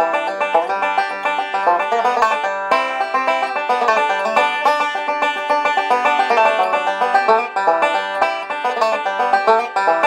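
Huber five-string banjo played solo in fast, continuous picking, a steady stream of bright plucked notes.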